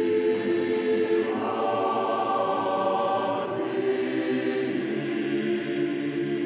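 Choir singing a slow chant in long held notes, moving to new notes about a second in and again about three and a half seconds in.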